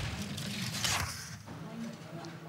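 Four-man bobsleigh's runners rumbling on the ice as the sled slides past down the track, fading away about a second in.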